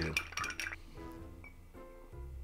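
Ice cube clinking a few times against a rocks glass as the drink is lifted, then soft background music with held notes coming in about a second in.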